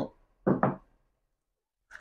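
A man's voice speaking one short word about half a second in, then a second-long pause with no sound.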